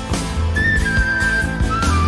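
Live rock ballad with a flute carrying the slow melody: it holds a long high note that then steps down, over the band's bass and drums.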